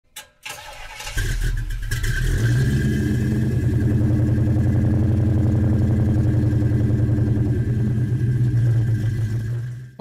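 A car engine starts about a second in after a brief click, then runs at a steady idle with an even, rapid pulse, and cuts off suddenly near the end.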